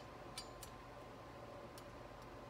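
A few light, faint clicks of small metal parts being handled, four in all, over quiet room tone.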